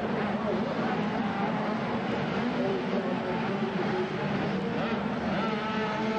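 Several 80cc two-stroke mini motocross bikes revving hard and changing pitch as they race around a dirt track, over a steady din of voices.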